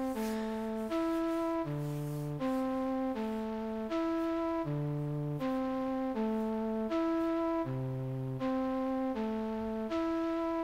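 Software flute instrument in FL Studio playing back a slow programmed melody of steady held notes. A new note comes roughly every three-quarters of a second, and a lower note sounds underneath about every three seconds.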